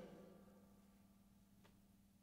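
Near silence after a song ends: the last sung note and guitar die away within the first half second, leaving faint room tone with a low steady hum.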